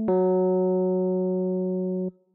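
A keyboard-type tone plays the interval of an ear-training question, falling from one note to a lower one. The first note stops at the start, a lower note begins about a tenth of a second in, and it is held with a slow fade before cutting off abruptly. The drop is a second or a third.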